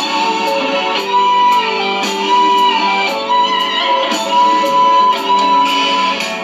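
Karaoke backing track playing an instrumental break: a sustained lead melody over a steady beat of about two strikes a second, with no voice singing.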